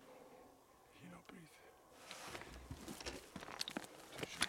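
Footsteps on loose stones and dry scrub, irregular crunches and clicks that start about halfway through after a quieter stretch.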